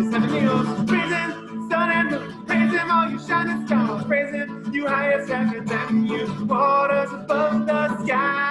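A man singing a fast, upbeat praise song while strumming an acoustic guitar.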